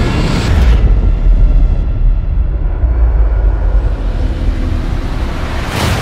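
A loud underwater explosion as film sound design: a sudden blast at the start followed by a long, deep rumble, with a second hit near the end.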